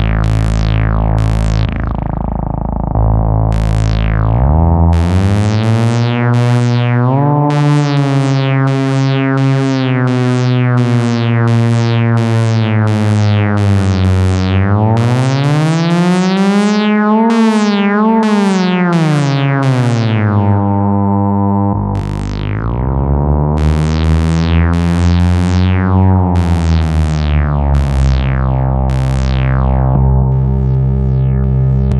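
Eurorack modular synthesizer with a Behringer 112 Dual VCO sounding a buzzy held tone rich in overtones, with short falling chirps repeating on top. About halfway through, the oscillator pitch is swept up and back down by hand with a slight wobble, and the patch changes abruptly a little over two-thirds of the way in.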